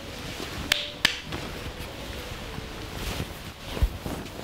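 Bedclothes rustling as people lie down and settle under the covers, with two sharp clicks about a second in and a low thump near the end.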